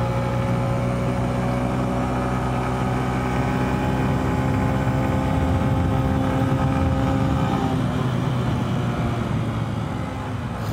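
Small 10-horsepower motorcycle engine pulling at wide-open throttle, its note steady and rising slightly. About three-quarters of the way through it drops away as the throttle is rolled off.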